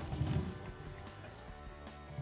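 A quiet stretch: a low rumble of the phone camera being handled fades out in the first half second. Faint steady music and a few soft clicks follow.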